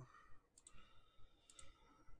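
Two computer mouse clicks about a second apart, each a quick double tick of press and release, against near silence. Each click re-runs a web list randomizer.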